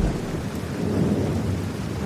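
Thunderstorm: steady rain with a low rumble of thunder.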